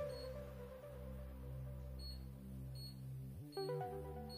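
Soft background music of held notes, with a pitch slide a little over three seconds in. Faint, short, high beeps sound about once a second.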